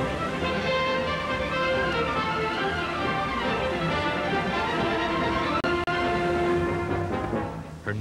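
Instrumental background music of sustained notes, with a momentary dropout about six seconds in, fading down near the end.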